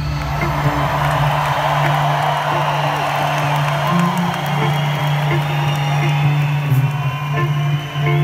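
Live rock band holding one steady low chord on guitars and keys, heard from the audience in an arena, with the crowd cheering and whooping over it.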